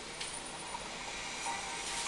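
A steady hissing, rushing noise with no speech, played through a laptop's speakers.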